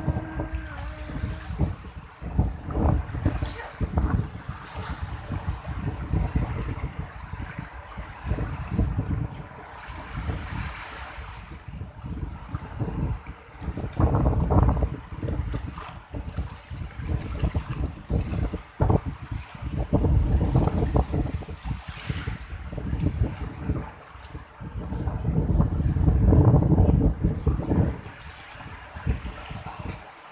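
Wind buffeting the microphone in irregular gusts, loudest near the end, over the wash of small waves on a sandy shore.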